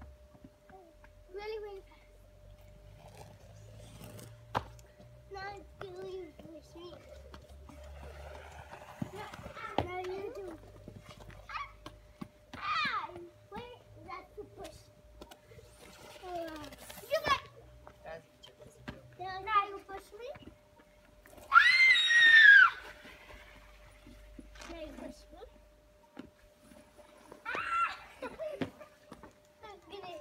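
Young children's voices: scattered chatter and calls, with a loud, shrill squeal about two-thirds of the way through and shorter high-pitched calls around it.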